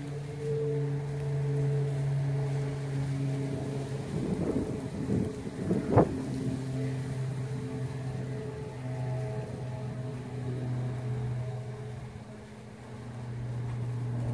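Dry brush and leaf litter rustling and crackling as a hunter pushes through the cover, with a sharp snap about six seconds in. A steady low hum runs underneath.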